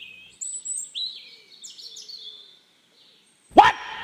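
Birds chirping in short, high calls, then a brief silence and a sudden loud, short cry near the end.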